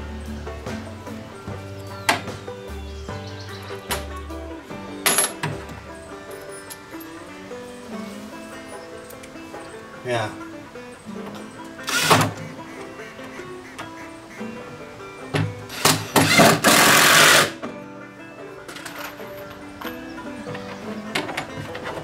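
Cordless drill driving short screws through fender washers into a plastic barrel, in a few brief bursts, the longest and loudest lasting about a second and a half near the end. Background music plays throughout.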